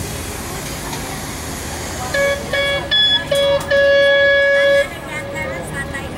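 A horn sounding four short toots and then one longer blast of about a second, all on one steady pitch.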